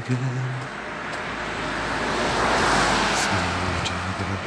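A car driving past: its engine and tyre noise swells to a peak between two and a half and three seconds in, then fades.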